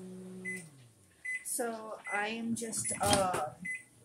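Microwave oven's running hum winding down and stopping about a second in, followed by a few short, high beeps. A voice talks quietly over it.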